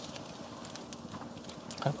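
Kitchen knife slicing through a raw fish fillet on a plastic cutting board, with a few faint ticks of the blade against the board.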